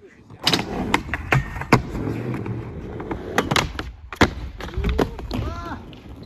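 Skateboard wheels rolling over concrete, broken by a series of sharp clacks and knocks of the board striking the ground, the loudest about four seconds in as a trick attempt ends in a fall. A short shout follows near the end.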